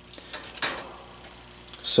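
Faint handling noise: a few light clicks and a brief rustle as multimeter test probes and a small circuit board are set down.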